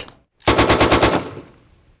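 A sharp metallic click, then a short burst of about ten rapid shots from an M240 7.62 mm belt-fed machine gun, with echo trailing off after it.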